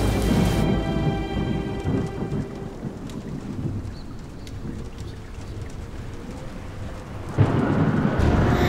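Thunder rumbling over steady rain, the rumble fading away over the first few seconds to leave quieter rain with scattered drips. A sudden loud crash comes near the end.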